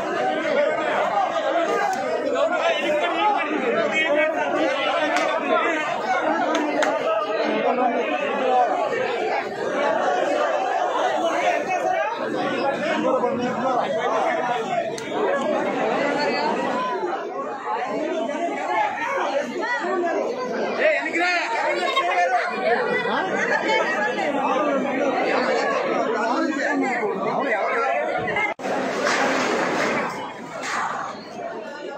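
A crowd of many people talking at once, their overlapping voices merging into chatter with no single voice standing out. The sound cuts briefly near the end.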